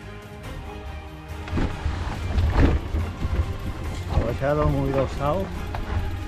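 Background music, cut off about a second and a half in by the rough rumble of wind on the microphone and a mountain bike rolling over a rocky dirt trail. A voice sounds briefly twice near the end.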